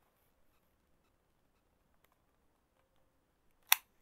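Near silence: room tone, broken near the end by one short, sharp click.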